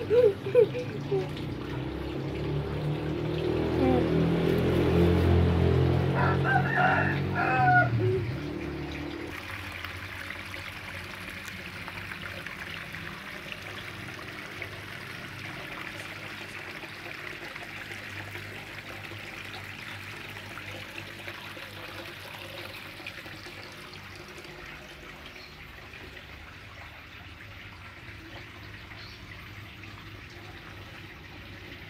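Running water at a garden fish pond, louder and splashier for the first nine seconds and then a steady, quieter trickle. A rooster crows once, about seven seconds in.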